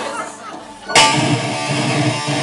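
A live rock band comes in suddenly and loudly about a second in, with electric guitar and bass guitar playing together. The first second is quieter, with some talk.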